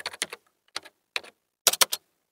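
Computer keyboard typing: irregular key clicks with a short pause a little under half a second in, then a quick run of three or four clicks near the end.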